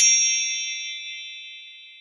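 Chime sound effect: a bright ding of several high ringing tones struck together, fading slowly away.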